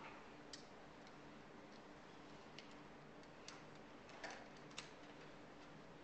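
Near silence: quiet room tone with a faint steady hum, broken by a handful of faint, irregularly spaced small clicks and taps.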